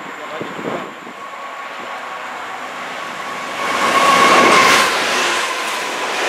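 A diesel-hauled train passing close by at speed, getting loud about three and a half seconds in, with a steady high tone over the rush of the wheels.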